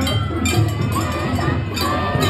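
Japanese festival float music (matsuri-bayashi): a small metal hand gong struck about twice a second over low drum beats and a gliding flute melody, with crowd noise.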